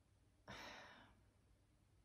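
Near silence with one soft breath from a woman about half a second in, fading away within about half a second.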